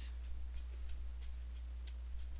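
Steady low hum with faint, unevenly spaced light ticks, about two or three a second.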